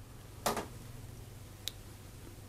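Two faint, short clicks about a second apart, the second sharper and thinner, over a low steady hum.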